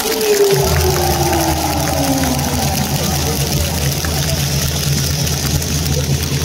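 Ballpark crowd noise and stadium loudspeaker sound. A low, steady hum comes in about half a second in and holds, and a single tone falls in pitch over the first couple of seconds.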